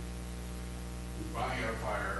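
Steady electrical mains hum on the audio feed, with a person's voice heard briefly in the second half.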